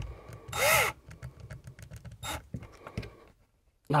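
A cordless drill gives a brief burst driving a screw into the wall, its motor pitch rising and falling, followed by light clicks and handling sounds of the metal bracket and screws.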